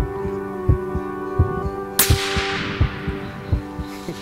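A single rifle shot about two seconds in, a sharp crack that dies away over about a second, over background music with a slow pulsing beat.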